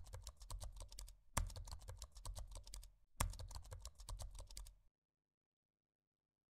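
Keyboard typing sound effect: rapid key clicks in three runs, each opening with a louder strike. It stops about five seconds in.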